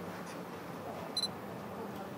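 A camera's brief, high electronic beep about a second in, the kind of focus-confirmation beep a camera gives as it is aimed. Under it is a faint steady room hum.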